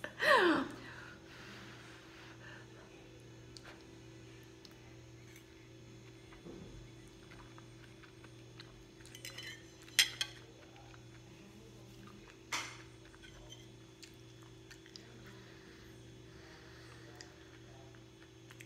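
Metal fork clinking and scraping on a ceramic plate a few times, the sharpest clink about ten seconds in and another a couple of seconds later, over a steady low hum. A short laugh trails off at the very start.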